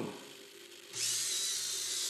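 Servo motors of an InMoov 3D-printed humanoid robot whirring as its arm starts to lift, beginning about a second in and running steadily.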